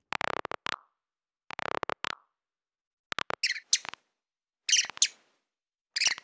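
Cartoon sound effects: two choppy sounds falling in pitch, each under a second long, then several short, high, bird-like chirps in small clusters, with silence between them.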